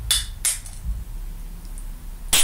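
Aluminium drink can being handled before opening: two sharp metallic clicks in the first half second as fingers work at the pull tab, then a low handling thump about a second in.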